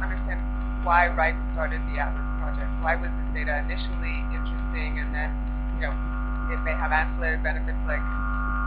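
Steady electrical mains hum on a conference audio feed: a strong low buzz with several steady higher tones layered above it. Faint, indistinct speech comes and goes over it.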